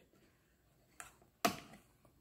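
A faint click, then a sharp plastic snap about a second and a half in, as the plastic lid of a smoothie bottle is worked open.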